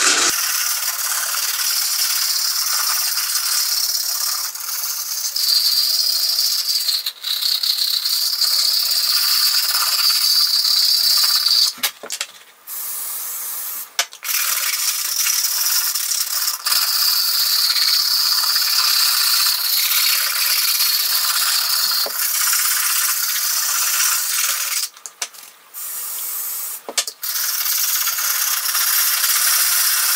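Stiff hard-plastic bristles of a suede cleaner's cap scrubbing back and forth on suede boot leather, a steady scratchy rubbing with brief pauses about twelve and fourteen seconds in and again around twenty-five seconds in.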